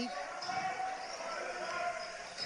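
Basketball game ambience in a gym, heard low: a faint murmur of voices from the crowd and bench, with a ball being dribbled on the hardwood court.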